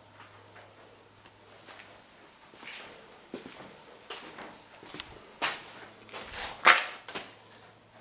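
Footsteps and shoe scuffs on a gritty concrete floor, with camera-handling knocks: a run of short scrapes and knocks starting about three seconds in, the loudest just before the end.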